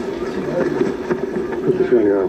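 Indistinct voices talking low over a steady background noise.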